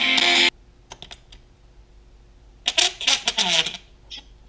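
Guitar music played loudly through a pair of small paper-cone speakers driven by a 3W Bluetooth amplifier module, cutting off abruptly about half a second in. A few faint clicks follow, then a loud burst of sound with a wavering pitch, about a second long, near the end.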